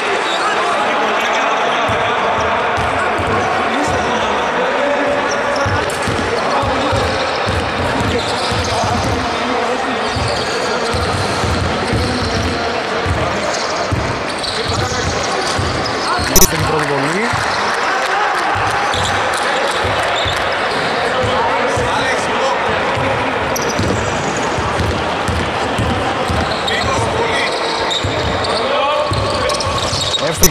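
Basketball bouncing on a hardwood court in a large, echoing sports hall, with players' voices throughout. About halfway through, a single sharp, loud bang comes as a free-throw attempt reaches the rim.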